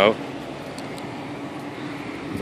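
Power sliding door of a 2010 Honda Odyssey closing under remote control, its motor running with a steady hum.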